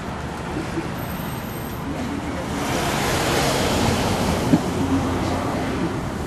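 A road vehicle passing on the street: its road noise swells to a peak about three to four seconds in, then fades away.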